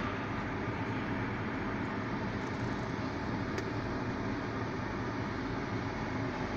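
A 1997 Cadillac DeVille d'Elegance idling, heard inside its cabin as a steady low hum with an even hiss over it.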